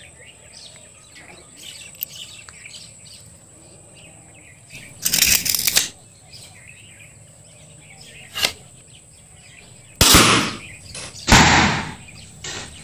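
Homemade bamboo toy gun: a sharp click about eight and a half seconds in, then two loud rushing bursts near the end as it is fired. An earlier loud rushing burst comes about five seconds in, and faint bird chirps sound in the background.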